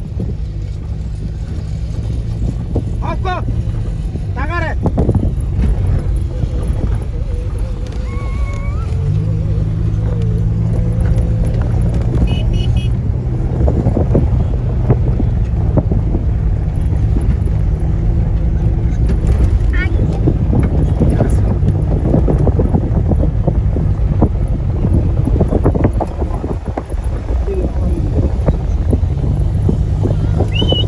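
Steady engine drone and rough road rumble from inside a car driving over a dirt steppe track with the window open, with people's voices calling out briefly a few times.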